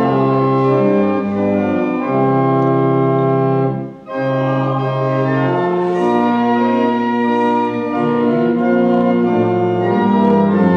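Church organ playing slow, sustained chords, with a brief break between phrases about four seconds in.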